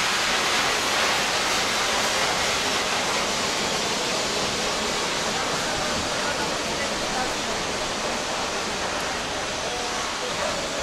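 Loud, steady hiss of power washers spraying water, even and unbroken throughout, easing slightly toward the end.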